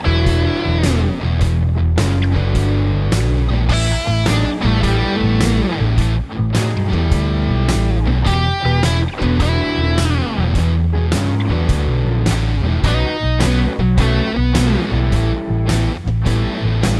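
Electric guitar playing blues lead licks in E, with bent notes sliding in pitch, over a blues backing track with a steady drum beat and bass.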